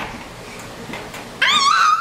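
A baby's short, high-pitched squeal near the end, wavering up and down in pitch.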